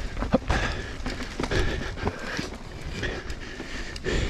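Mountain bike rolling along a dirt singletrack: steady tyre noise on packed dirt and small stones, with scattered sharp knocks and rattles from the bike over bumps.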